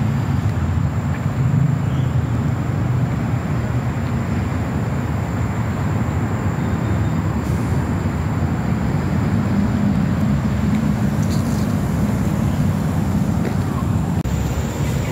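A steady low rumble of wind buffeting the phone's microphone.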